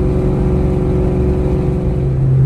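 Supercharged 4.6-litre V8 of a 2003–04 Ford Mustang SVT Cobra ('Terminator') cruising at a steady speed, heard from inside the cabin as a steady drone with a held tone over it.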